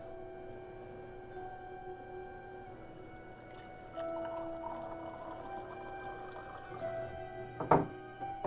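Background music with long held notes, with coffee poured from a glass French press into a mug about halfway through. Near the end the mug is set down on a desk with a single sharp knock.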